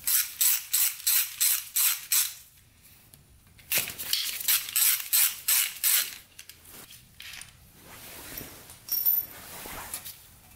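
Hand socket ratchet clicking in two runs of quick, even strokes, about three a second, as bolts are backed out of a motorcycle engine's oil filter cover. Softer scattered ticks and rustling follow in the second half.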